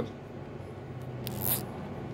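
Small hand ratchet clicking briefly, one short burst about a second and a half in, over a faint steady low hum.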